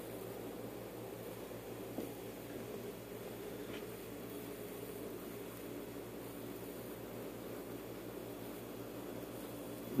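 Aquarium filter motor humming steadily over a faint hiss, with one soft click about two seconds in.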